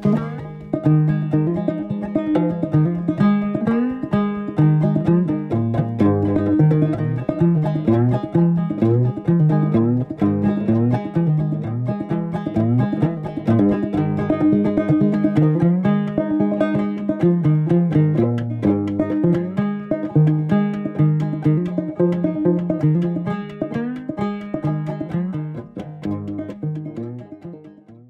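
Background music: a quick plucked-string tune of many short notes, fading out at the very end.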